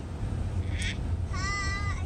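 A young child's high-pitched, drawn-out call lasting about half a second, just after the middle, over the steady low rumble of a moving van's cabin.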